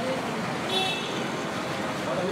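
Busy street ambience: a steady wash of road traffic noise with indistinct crowd chatter.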